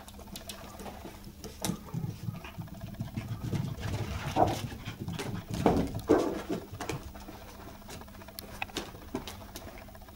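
Toy poodle puppies playing: light pattering and scuffling on the carpet and rustling of a cardboard tissue box, busiest about halfway through.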